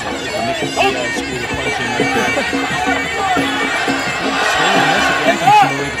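Sarama, the traditional live music played during Muay Thai bouts: the reedy pi java oboe playing a winding, sliding melody over steady lower tones and drums.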